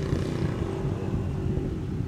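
Steady low rumble of motor vehicle traffic running in the background.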